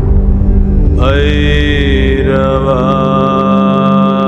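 Devotional soundtrack music: a voice chanting a mantra in long held notes over a steady low drone. The voice enters about a second in with a short upward glide, then steps down to another held note.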